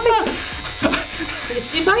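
Electric hair clippers buzzing steadily as they cut hair, with a person laughing over them near the start.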